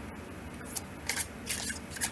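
Tarot cards handled and shuffled by hand: a handful of short, crisp papery strokes, starting about two-thirds of a second in.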